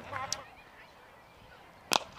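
Cricket bat striking the ball: one sharp crack near the end, after a quiet stretch of faint ground noise.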